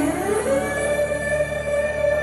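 Live Arabic music played loud through a club's sound system, its melody sliding up at the start into a long held note.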